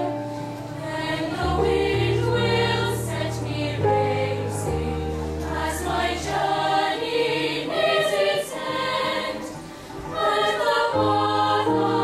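Girls' choir singing, over held low bass notes that change every second or two.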